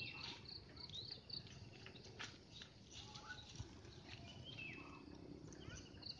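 Faint birdsong: many short chirps and whistled notes, some sliding down in pitch, scattered throughout over a low, even background noise.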